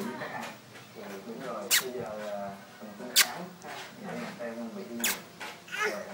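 Babies babbling and making small cooing vocal sounds, with three short, sharp squeaks about two and three seconds apart.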